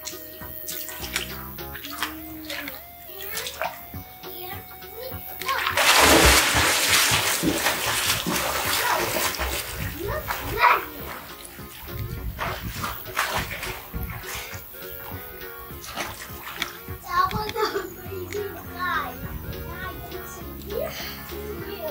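Background music with a child's voice. About six seconds in comes a few seconds of rushing running water, loudest at its start.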